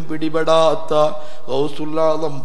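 A man's voice chanting on a steady, held pitch in a melodic religious recitation.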